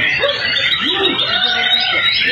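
Many caged songbirds singing at once, a dense tangle of quick chirps and whistles, mixed with people's voices.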